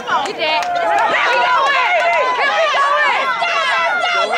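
Sideline spectators yelling and cheering during a punt return, several high-pitched voices shouting over one another without let-up.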